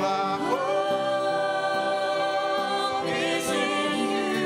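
Worship band and group of singers performing a slow song together, several voices holding long notes over acoustic guitar and violin.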